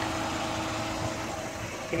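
Suzuki Carry mini truck's small engine idling steadily, a low even hum.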